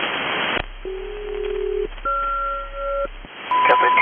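SELCAL selective call sent over HF single-sideband radio: two tones sounding together for about a second, a short break, then a second pair of tones for about a second. This is the ground station's code that rings the chime in one aircraft's cockpit. The band hiss drops out as the tones begin, and near the end a man's voice returns with a steady whistle.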